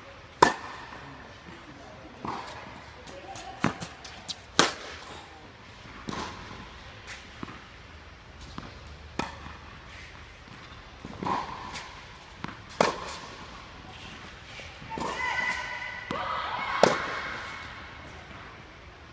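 Tennis racket striking balls during groundstroke practice, with ball bounces on the court: about ten sharp pops, one every second or two, the loudest just after the start and near the end. Some brief pitched sounds come in near the end.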